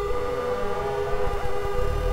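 Soma Lyra-8 organismic synthesizer holding a drone: steady overlapping tones with many overtones. A few short rising pitch glides come about a second in, and the deep bass thins out early on.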